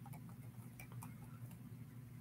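Faint, irregular light clicks of small plastic pocket-size football helmets knocking against each other as a hand rummages through a pile of them, over a steady low hum.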